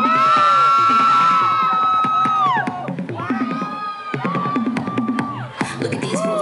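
A song playing over the stage sound system for a dance routine, with the audience cheering and whooping over it; one high voice is held for about two and a half seconds near the start.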